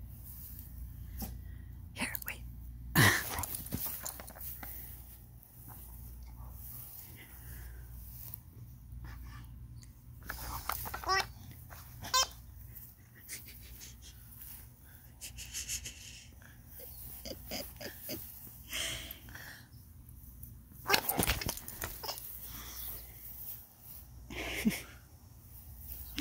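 A dog nosing and nudging a Wobble Wag Giggle toy ball, with short irregular bursts of the ball's giggling noise now and then and the dog sniffing at it between them. The loudest bursts come about 3 s and 21 s in.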